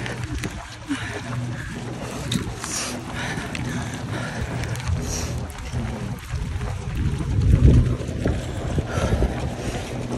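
Wind rumbling on the microphone of a handheld camera carried by a running marathoner, with faint voices in the background.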